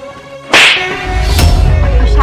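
A dubbed slap sound effect: a sharp, whip-like crack about half a second in, with a second crack about a second later, followed by a deep, sustained bass boom of dramatic music.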